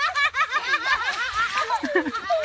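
Laughter in quick, high-pitched bursts, going on without a break.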